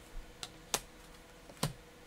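Tarot cards being handled and laid down on a table: four short, sharp clicks and taps, the two loudest near the middle and just before the end.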